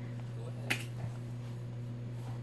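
A single sharp click about two-thirds of a second in, then a softer tick, over a steady low hum.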